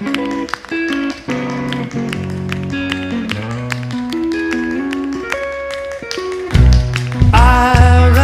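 Live band music: held guitar and keyboard notes over light, clicking percussion. About six and a half seconds in, the full band comes in louder with heavy bass and drums.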